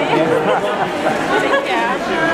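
Chatter of a crowd: many voices talking at once, overlapping, in a large hall.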